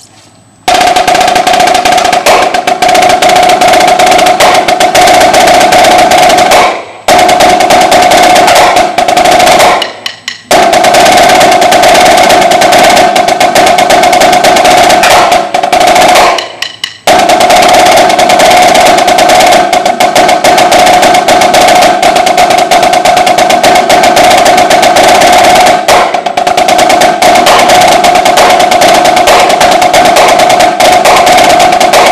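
A marching snare drum played with sticks in a loud, fast, continuous stream of rolls and strokes, starting about a second in. The playing stops briefly three times, near 7, 10 and 17 seconds.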